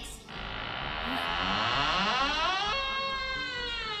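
A door creaking open: a long pitched creak that climbs in pitch over a rough rasp, then holds nearly steady and sags slightly toward the end. A drama sound effect, with a low pulsing music bed underneath.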